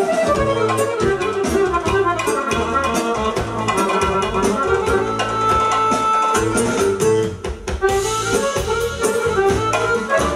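Live band music led by a button accordion, played continuously, briefly thinning out about seven and a half seconds in.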